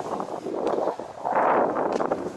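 Wind buffeting the microphone, a rushing noise that swells about a second in and drops away near the end.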